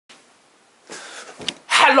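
A brief rushing whoosh about a second in and a sharp click, then a man calls out a loud 'Hello!' near the end.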